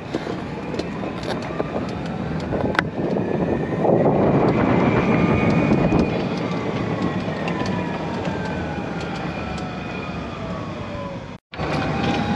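2017 E-Z-GO RXV electric golf cart driving, its AC drive motor whining higher as it speeds up and then falling as it slows, over tyre and wind noise that is loudest around four to six seconds in. The sound cuts out for a moment near the end.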